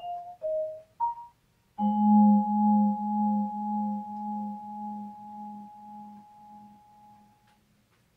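Solo vibraphone played with mallets: a few short notes, then a final chord about two seconds in that rings with a slow pulsing tremolo of about two pulses a second from the motor-driven fans, fading away over some five seconds.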